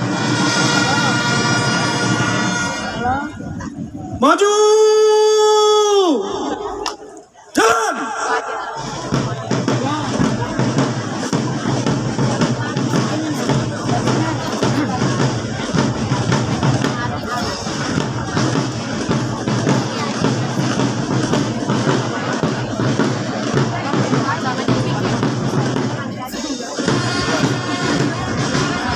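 Marching drum-and-brass band playing: held brass chords, one long note that slides up at its start and down at its end about four seconds in, then from about nine seconds on the full band with drums playing a steady rhythm.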